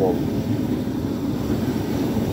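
Propane pipe burners of a homemade pig roaster burning steadily, giving an even, low rushing noise from the gas flames.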